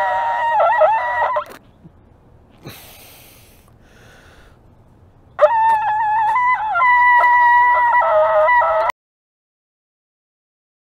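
Ram's-horn bukkehorn blown with the lips, two high, strained blasts whose pitch wavers and breaks, the first short and the second about three and a half seconds long. The tone is unsteady, typical of this narrow-bored horn before the player finds its sweet spot. Between the blasts a breathy hiss, and the sound cuts off abruptly near the end.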